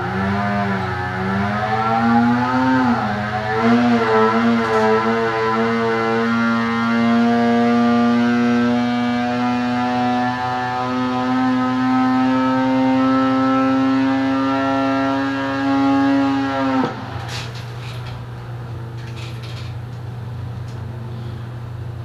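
Arctic Cat C-TEC 800 two-stroke twin in a 2020 Alpha snowmobile making a wide-open dyno pull under load. It is blipped unevenly for the first few seconds, then held open with its pitch climbing steadily for about ten seconds to near 8000 rpm. The throttle is cut sharply about 17 seconds in, leaving a steady low hum as the engine winds down.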